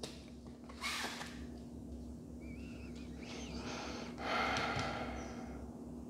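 A person breathing in a quiet room with a steady low electrical hum. There is a short breath about a second in and a longer, louder exhale about four seconds in, with a brief faint wavering whistle-like tone just before it.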